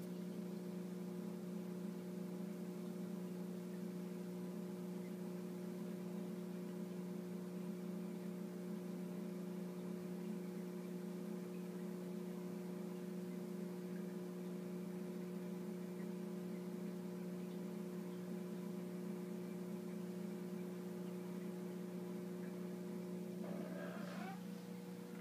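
Steady electrical hum: a low drone with several fixed higher tones over it, unchanging throughout.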